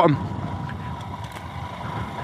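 Royal Enfield Himalayan's 411 cc single-cylinder engine running steadily as the bike rides along a dirt lane, with a faint steady high tone over the engine and road noise.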